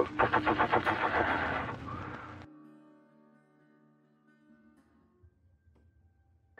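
A home wind generator whirring with a fast, even pulsing as it picks up in the wind, fading and then cut off abruptly about two and a half seconds in. Soft held music notes follow and die away.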